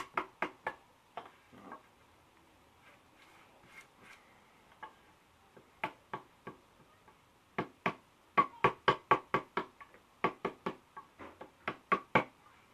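Wood chisel tapped with a mallet, chipping out the neck pocket of a wooden bass body: a few sharp taps at first, then scattered ones, then a quick run of about four taps a second through the second half.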